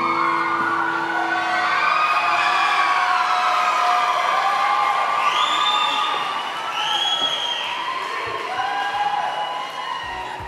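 Audience cheering and whooping at the end of a dance routine, with high shrill screams rising and falling a few seconds in. The last sustained chord of the music fades out at the start.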